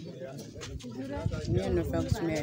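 A woman speaking in a local Ghanaian language.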